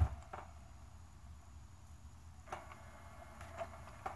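Guitar music playing from a Sony DVP-CX985V disc changer cuts off abruptly as playback stops. A low steady hum follows, with a few faint mechanical clicks from the changer.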